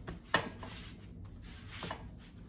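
Metal kitchen canisters being set down and shifted on a woven wicker tray on a stone countertop. There is a sharp knock about a third of a second in, rubbing as they are slid into place, and a softer knock near the end.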